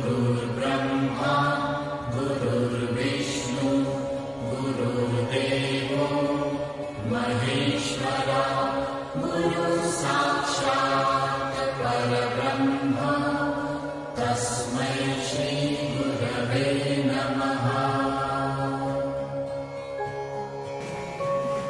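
Background devotional music: a mantra chanted over a steady low drone.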